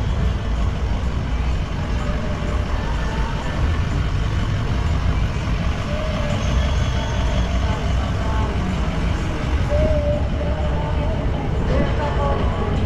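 Steady low rumble of car traffic moving and idling close by, with faint voices in the background.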